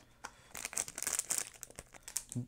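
Clear plastic snack bag crinkling as it is drawn out of a small cardboard box, a run of quick, irregular crackles.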